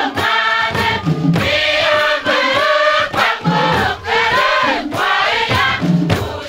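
A large mixed choir singing a song together, with many hand drums beating along under the voices.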